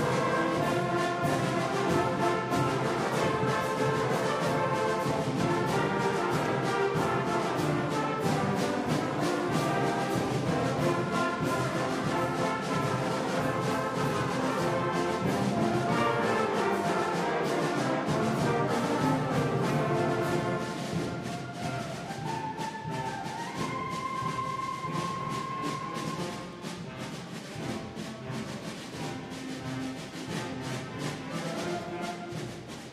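School concert band playing, brass to the fore, with timpani. The music grows softer about two-thirds of the way through, with a few held notes standing out near the end.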